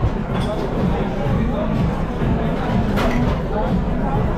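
Restaurant dining-room chatter: other diners' voices talking over one another at a steady level.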